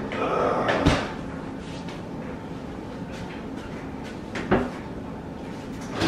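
Knocks and bangs of kitchen work: a cluster in the first second, the loudest about a second in, and another sharp knock about four and a half seconds in, over a steady low hum.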